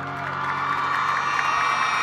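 A live audience cheering and whooping as a song ends, with steady high tones coming in about half a second in.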